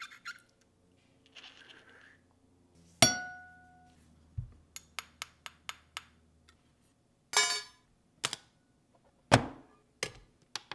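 Metal clinks and taps of a titanium Apple Card being handled on hard surfaces. One sharp strike about three seconds in rings with a clear tone. A run of light taps and a few short scrapes follow.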